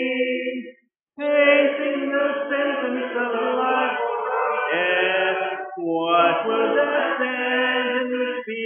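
Congregation singing a hymn a cappella, many voices holding long notes together. The singing breaks off for a breath about a second in, then carries on into the next line.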